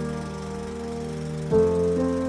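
Closing theme music: held chords, with a new chord struck about one and a half seconds in.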